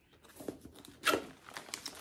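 Cardboard packaging being opened and a plastic-bagged throw blanket lifted out: papery rustling and crinkling plastic, with a louder rustle about a second in.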